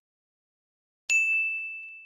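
One bright ding, a bell-like chime sound effect, struck about a second in and ringing out slowly. It is the notification ding of an animated subscribe button being clicked.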